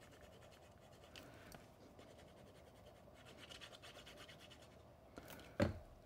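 Faint scratching of a sponge-tipped bottle of multipurpose liquid glue being rubbed across the back of a small cardstock piece, with one short knock near the end as the bottle is set down on the table.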